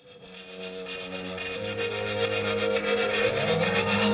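Industrial electronic soundtrack music fading in: held low drone notes under a fast, even rasping pulse, growing steadily louder.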